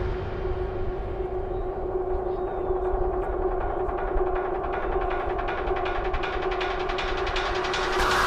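Hard techno breakdown in a DJ set: a sustained droning synth chord holds steady with the heavy kick gone, while the treble slowly opens up and a fast ticking rhythm builds underneath.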